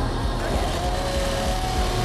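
A chainsaw engine running loud at high revs, its pitch rising about half a second in.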